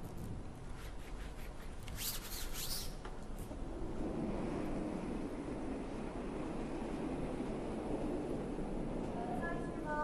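Curling arena ambience: a low, steady rumble that swells about four seconds in, with a few faint clicks around two to three seconds in.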